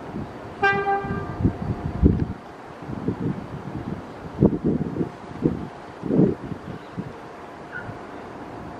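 A subway train horn gives one short toot about half a second in, followed by a run of irregular low thumps over a steady background hum.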